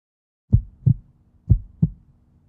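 Heartbeat sound effect: deep double thumps in a lub-dub rhythm, a pair about once a second, starting after a brief silence, over a faint steady hum.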